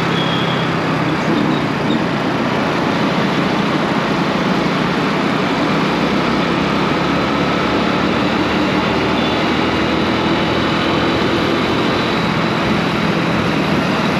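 Motorcycle riding at speed in city traffic, heard from the rider's seat: a steady engine note under a loud, even rush of wind and road noise.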